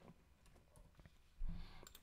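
A few faint, scattered computer mouse clicks, with a short, soft low thump about one and a half seconds in.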